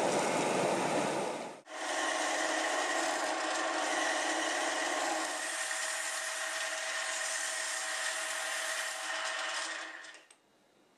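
Flowing stream water for about the first second and a half, then a small metal lathe running with a steady whine while a strip of sandpaper is held against the spinning cork grip of a bamboo fly rod, sanding it to shape.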